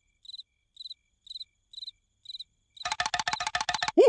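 Cricket chirping steadily, about two short chirps a second. Near the end a much louder, fast rattling trill takes over.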